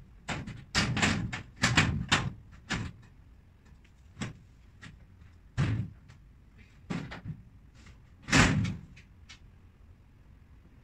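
Knocks and bumps of flat-pack cabinet panels being handled and fitted together: a quick cluster of sharp knocks in the first three seconds, then single knocks about a second apart, the loudest a little after eight seconds in.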